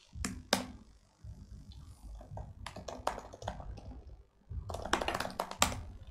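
Typing on a computer keyboard: irregular key clicks in short runs, busiest near the end.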